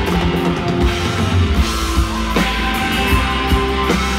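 Live rock band playing loud, with drum kit, electric guitars, bass and keyboards and no vocals at this moment.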